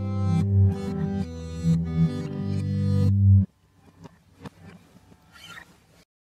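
Reversed acoustic guitar music: sustained chords that swell in loudness and cut off suddenly about three and a half seconds in, followed by faint scattered clicks and a soft breathy noise near the end.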